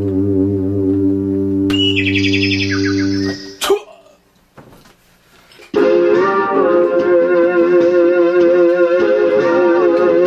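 Synthesizer music. A steady low synth drone with a short high run over it breaks off with a click a little over a third of the way in. After about two quiet seconds, a keyboard synthesizer starts playing sustained notes with a wobbling pitch.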